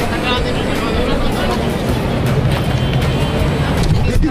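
Busy city street sound: crowd chatter over a steady low rumble of traffic.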